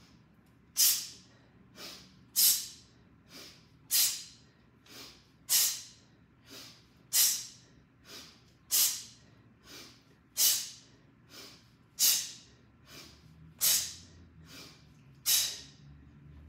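A woman's forceful exhales, ten sharp breaths about a second and a half apart, one with each kettlebell swing, with quieter inhales between them.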